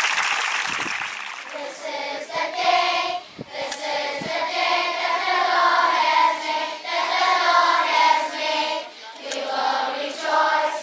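Brief applause, then a large group of schoolchildren singing together as a choir from about a second and a half in.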